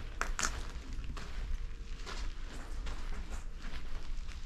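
Footsteps on a debris-covered floor: a series of short, irregular steps.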